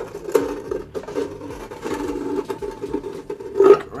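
Scrapes and clicks of a battery box and its cables being handled and shifted into place, with a sharp knock near the end.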